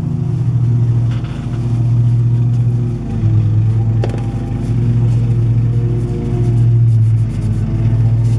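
Lawn mower engine running with a steady drone, its level swelling and dipping every second or two.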